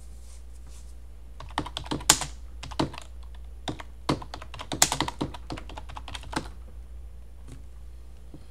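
Computer keyboard typing: a run of irregular key clicks starting about a second and a half in and stopping a little after six seconds, as a terminal command is typed and entered.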